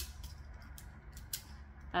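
A few light clicks and taps from a blue plastic embroidery hoop being handled, the sharpest right at the start, over a low steady hum.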